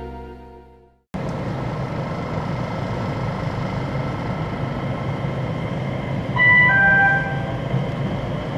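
Music fading out, then the steady low rumble of an electric train's cabin as the train pulls out of the station. About six seconds in, a short electronic chime of several stepped tones sounds over it for about a second and a half.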